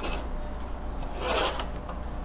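Handling noise at an electric guitar's headstock: slack steel strings rubbed and rattled by hand, with a short scrape and a few light clicks in the second half, over a steady low hum.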